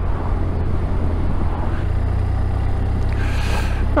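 Touring motorcycle under way: steady engine and wind rumble on the riding microphone, with an oncoming car going past close by at the start.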